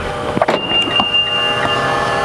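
Mitsubishi Eclipse Cross door being unlocked with the keyless-entry button on its handle: a few sharp clicks from the lock mechanism about half a second in, over a steady electric hum, with a thin high steady tone lasting about a second.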